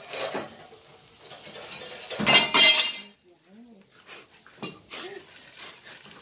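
Metal pans and utensils clattering and scraping at a stove where a bánh xèo crêpe is frying. The loudest, ringing clatter comes a little after two seconds in.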